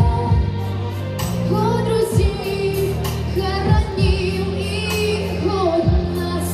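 A young female singer sings a slow song into a microphone, holding notes with vibrato, over instrumental accompaniment with sustained low notes and a few drum beats.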